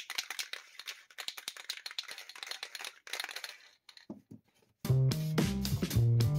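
Aerosol spray can of Dupli-Color vinyl dye being shaken hard, its mixing ball rattling rapidly, stopping after about three and a half seconds. About five seconds in, louder background music with guitar begins.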